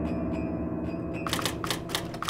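Quick typewriter-style clicks, a typing sound effect for an on-screen caption, come in about halfway through. Under them a held musical chord slowly fades.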